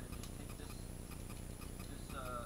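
Quick, even ticking, several ticks a second, over a low hum.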